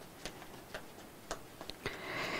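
Faint, short clicks at an uneven pace of about two a second over quiet room tone.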